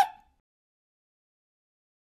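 Silence after a clip ends: the tail of a rising vocal note and its brief echo die away in the first instant, then nothing at all.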